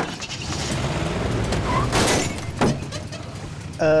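Car engine revving, heard from inside the cabin; it comes in suddenly and runs on steadily.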